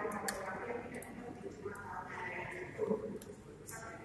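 Speech: a person talking into a microphone over a sound system.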